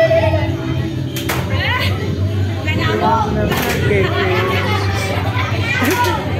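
Children's voices shouting and chattering, with dance music playing behind and a few sharp claps or knocks.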